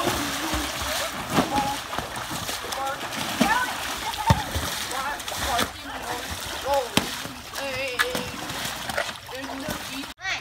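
Pool water splashing continuously as a swimmer thrashes and splashes a ball across the pool, with children's short shouts and calls over it.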